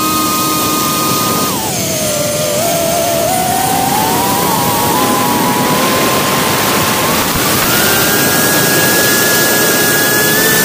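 Whine of a small radio-controlled aircraft's motor and propeller heard from its onboard camera, over a rush of wind noise. The pitch drops sharply about a second and a half in, climbs slowly back, and rises again about seven seconds in.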